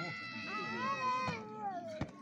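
A person's long, drawn-out, high-pitched vocal cry that holds steady and then slides down in pitch near the end.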